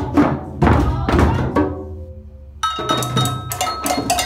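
Hand drums, djembes and frame drums, struck together in a steady beat of about two strokes a second. The beat stops about one and a half seconds in with a ringing fade. After a short lull, a faster, brighter clicking percussion beat starts.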